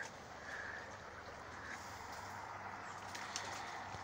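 Faint steady outdoor background noise with no clear single source, and a couple of faint clicks near the end.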